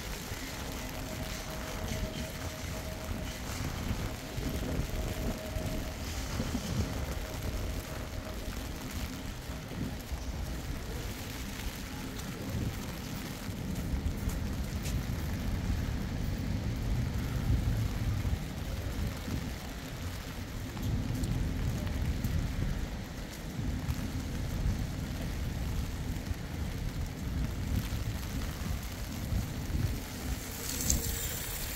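Outdoor street ambience in light rain: a steady hiss over wet paving with an uneven low rumble that swells through the middle stretch.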